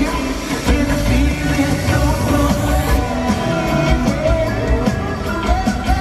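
A live pop-rock band playing loudly in an arena, the lead singer's voice over drums, bass and keyboards, with the echo of a large hall.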